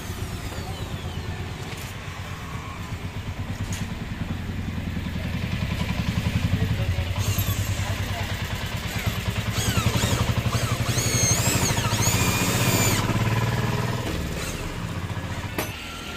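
Electric drill running in spurts for several seconds as it bores into sheet metal, its whine rising and falling in pitch. Under it is the steady low rumble of an idling engine.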